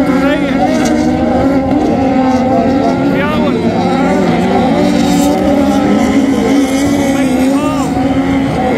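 Several Beetle-class autocross cars racing on a dirt track, their engines running hard together, with a few short rises and falls in pitch as drivers rev up and lift off.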